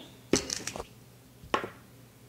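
Kitchen knife cutting lengthwise through a raw, crisp potato on a cutting board: a quick run of crunching snaps as the blade finishes the cut, then a single click about a second and a half in as the knife is set down on the board.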